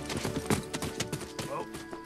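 A horse's hooves clattering and stamping on the ground in quick, irregular strikes, the sharpest about half a second in, over film music with held notes. A man calls "Whoa" to the horse near the end.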